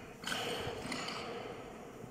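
Loaded barbell being cleaned: a sudden clatter of the bar, its bumper plates and the lifter's feet on the platform as the bar is pulled and caught at the shoulders, about a quarter second in, fading over the next second.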